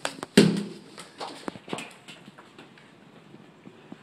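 Knife chopping an apple on a wooden desktop: a quick run of sharp knocks in the first two seconds, the loudest about half a second in, then a few faint taps.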